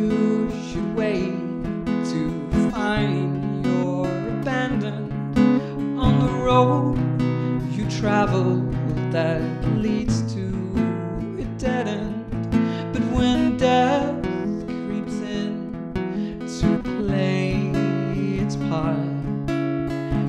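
Acoustic guitar strummed in a steady rhythm, the chords changing every few seconds, with no singing.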